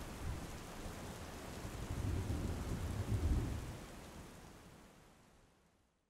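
Steady rain with a low rumble of thunder that swells about two to three seconds in, then the whole storm fades away toward the end.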